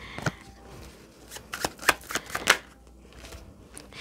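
Tarot deck being shuffled by hand: a few soft card flicks and slaps, the sharpest of them between about one and a half and two and a half seconds in.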